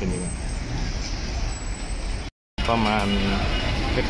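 Steady city street traffic noise. It drops out completely for a split second about two and a half seconds in, where the recording is cut.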